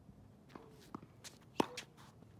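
Tennis racket striking a ball about one and a half seconds in, the loudest and sharpest sound, amid a few lighter footsteps and shoe scuffs on a hard court.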